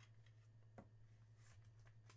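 Near silence: a faint steady low hum of room tone, with one soft click just under a second in.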